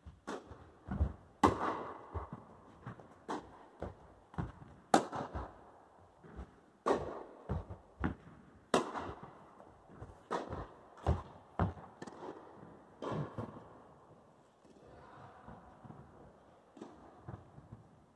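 Tennis rally in an indoor hall: a tennis ball struck by rackets and bouncing on the court, sharp hits with softer bounces between, each ringing briefly in the hall. The exchange stops about 13 seconds in, with one more faint knock near the end.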